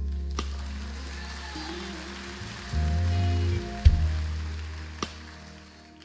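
Sustained church keyboard chords over a low held bass note, fading away, with a hiss of water splashing and streaming from a full-immersion baptism in the pool. Three sharp knocks stand out.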